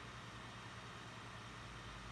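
Faint room tone: a steady low hiss with a faint low hum underneath.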